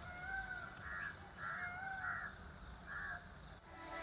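Birds calling faintly: two clear, slightly arched calls and about four rougher, harsher calls scattered between them, over a low steady rumble.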